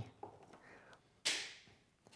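A single sharp snap about a second in, fading over half a second: a reusable plastic straw being snipped to length with cutters.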